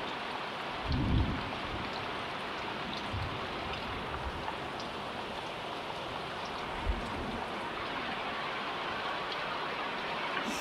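Heavy rain falling steadily, a constant even hiss, with a brief low thud about a second in.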